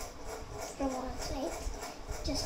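A voice speaking indistinctly, over a steady low rumble.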